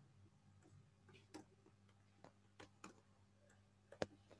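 Near silence broken by about half a dozen faint, irregular clicks of computer keyboard keys as a few characters are typed, starting about a second in, over a faint low hum.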